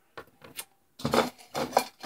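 Light clicks and clatter of small hard plastic toy figures being handled on a tabletop: a couple of faint taps, then a quicker cluster of clicks in the second half.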